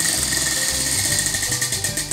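Prize wheel spinning, its pointer ticking rapidly over the pegs on the rim, over background music with a pulsing bass beat.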